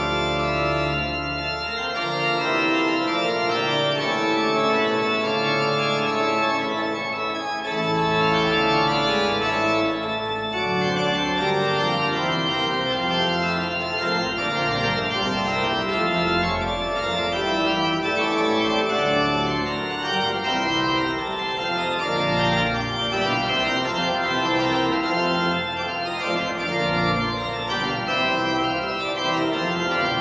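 Pipe organ played on the manuals and pedals: sustained chords shifting under the hands. The deep pedal bass drops out about two seconds in and returns around eight seconds.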